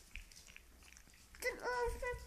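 Magyar Vizsla puppy eating dry kibble from a glass bowl: faint crunching and small clicks of the pieces against the glass. About a second and a half in, a louder high-pitched voice cuts in.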